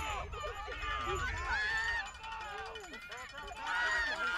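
Several people shouting and calling out at once, overlapping and unintelligible, during a football play.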